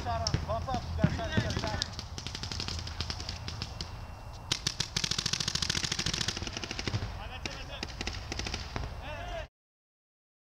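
Paintball markers firing in rapid strings of shots, heaviest about halfway through, with players' shouts in the first two seconds. The sound cuts off suddenly near the end.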